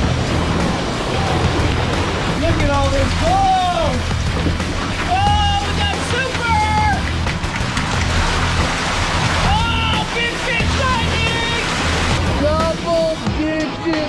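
Background music with a repeating bass line and a singing voice in several phrases. Under it runs the steady rush of water carrying trout down a fish-stocking chute.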